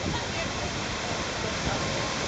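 Large public fountain's water splashing steadily into its stone basin, an even rushing noise with faint voices of people around.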